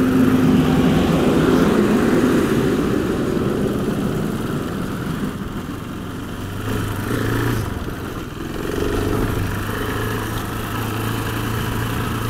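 KTM 690 Enduro's single-cylinder engine running at riding speed on a dirt road, heard under a steady rush of wind and road noise. A low steady engine hum stands out more in the second half.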